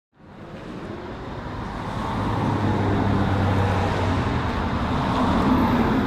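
Road traffic noise with a motor vehicle's low hum, swelling in over the first two seconds and then holding steady.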